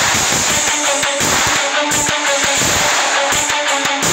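Hard rock music played by a band: electric guitar and bass over a fast, driving drum beat.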